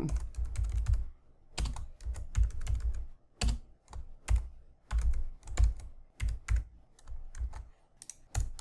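Typing on a computer keyboard: quick runs of keystroke clicks broken by short pauses, as a line of code is entered.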